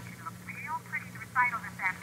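A thin, quiet, phone-like voice from the television, with a steady low hum underneath.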